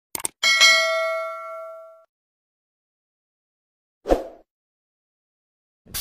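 Subscribe-animation sound effects: two quick clicks, then a bright bell ding that rings out and fades over about a second and a half. A brief second effect follows about four seconds in.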